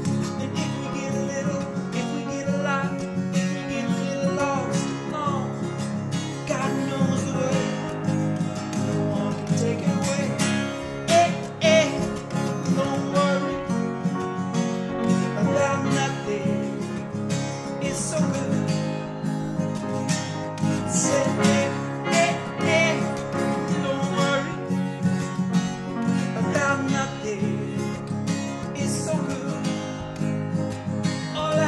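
Acoustic guitar strummed steadily in an instrumental passage of a song.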